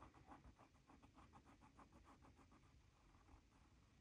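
Faint, quick, repeated scratching of a Micron fine-liner pen on paper as a line is inked over and over, about six short strokes a second, dying away a little under three seconds in.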